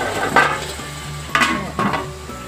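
Pork pieces sizzling in a pot while a lid is set on it, knocking against the pot three times.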